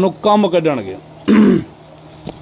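A man briefly clearing his throat, one short rasping burst about a second and a half in, right after a few spoken words.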